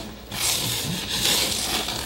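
Hands rubbing and pressing along the bottom edge of an upturned glass fish tank and the styrofoam around it, working the seal down: a steady scratchy rubbing that starts a moment in.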